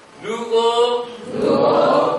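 A man's voice singing a slow chant-like line in two long held notes, the first starting a moment in and the second starting about halfway through.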